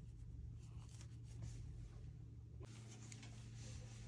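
Faint scratching and light ticking of wooden knitting needles against each other and the wool yarn as stitches are knitted by hand.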